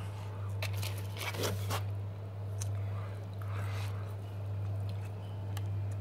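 A person chewing and biting into fried food, with scattered small crunches and mouth clicks over a steady low hum.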